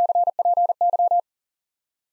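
A single steady mid-pitched beep keying the Morse code abbreviation CPY ("copy") at 40 words per minute: three quick groups of dits and dahs, lasting just over a second, then stopping.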